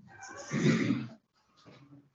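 The office door's hinges creaking as the door is swung, one drawn-out pitched squeal lasting about a second.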